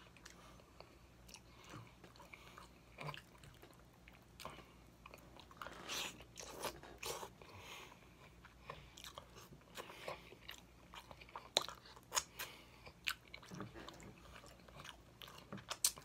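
A person chewing baked chicken stuffed with cabbage, eaten by hand: wet mouth smacks and clicks, sparse at first and coming thick and fast in the second half.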